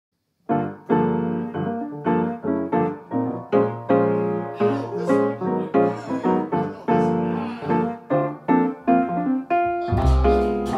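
Solo jazz piano introduction on a grand piano: a run of struck chords, each ringing and fading, starting about half a second in.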